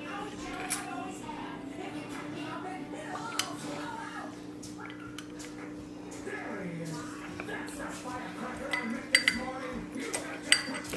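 A metal tablespoon clinking against a small glass bowl and the oil bottle while oil is measured out. There are a few light clinks, most of them near the end, over a steady low hum.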